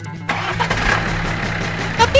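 An engine starting and then running: a rough burst of engine noise begins about a quarter of a second in and holds steady, over a low steady hum.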